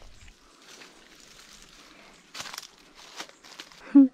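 Footsteps and brushing through grass and plants: a few short rustling crunches about halfway in and near the end, over a faint steady outdoor hiss.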